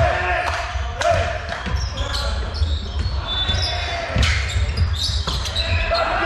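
Volleyball rally in a sports hall: the ball is struck by hands and arms several times, sharp slaps that echo in the hall, with sneakers squeaking on the wooden floor and players calling out.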